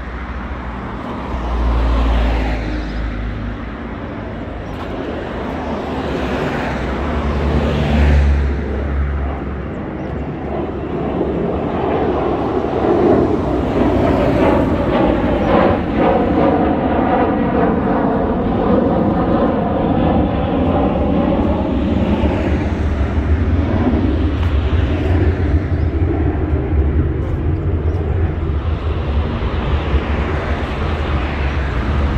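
Road traffic passing close by on a busy multi-lane road: vehicles going past about two and eight seconds in, then a louder sustained rumble that builds from about ten seconds in and holds.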